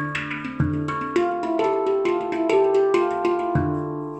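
Steel handpan played with the hands: a quick rhythmic beat of fingertip strikes on the tone fields, over ringing pitched notes and deep low notes. The last deep note is struck near the end and left ringing.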